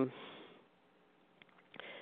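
A speaker's pause between phrases: the end of a drawn-out "um", then near quiet, and a faint sniff-like intake of breath near the end before speech resumes.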